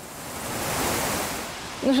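A gust of wind: a rushing noise that swells to a peak about a second in and dies away half a second later.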